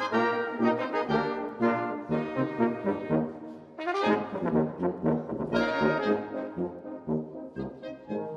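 Small Swiss folk brass band playing a tune together: trombone, trumpets, euphonium and tuba, with notes changing several times a second. The playing drops back briefly a little before halfway, then comes in again.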